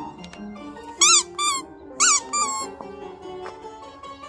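Plucked-string background music, cut through by two pairs of short, high-pitched squeaks that rise and fall in pitch, about one and two seconds in, louder than the music.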